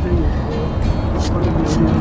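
Steady low rumble of a car, heard from inside its cabin, with two brief rustles in the second half.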